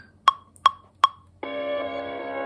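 Ableton Live's metronome count-in: three short, even woodblock-like clicks about 0.4 s apart. About 1.4 s in, the sample loop processed through the Portal plugin starts playing as the recording begins: sustained dark chords.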